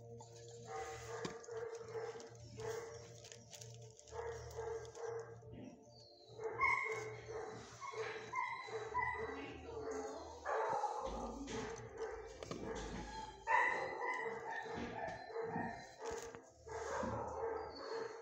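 Dogs barking in a shelter kennel, on and off, busier and louder from about six seconds in.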